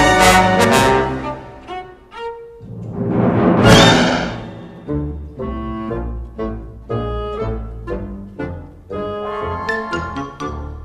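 Orchestral cartoon score with strings and brass playing short, punchy phrases. A loud rushing burst of noise swells up to a peak a little under four seconds in, then dies away.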